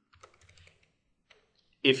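Faint keystrokes on a computer keyboard as a word is typed: a quick run of taps in the first second and one more a little later. A man's voice starts at the very end.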